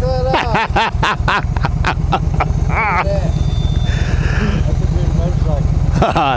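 Yamaha V Star 1300 V-twin motorcycle idling with a steady, even low pulse.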